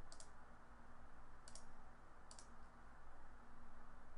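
Three short clusters of faint clicks in the first two and a half seconds, over a low steady hum of background noise.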